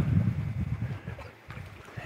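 Wind buffeting the camera microphone, giving a low, uneven rumble that is strongest at first and eases off about halfway through.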